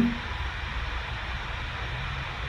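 Steady low hum and hiss of room tone, with no distinct event.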